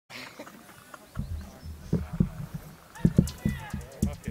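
Indistinct, low-pitched voices talking close to the microphone, in short uneven bursts that grow louder about three seconds in.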